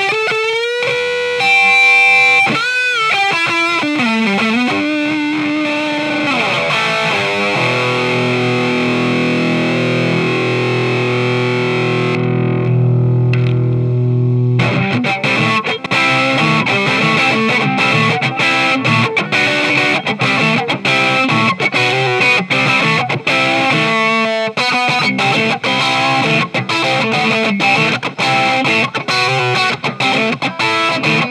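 Electric guitar played through the E-Wave DG50RH all-tube amp head's distorted gain channel, boosted by a Tube Screamer pedal for a cutting lead tone. It opens with string bends and vibrato, holds a ringing note from about a quarter of the way in that cuts off sharply around halfway, then goes into fast, tightly chopped picked riffing.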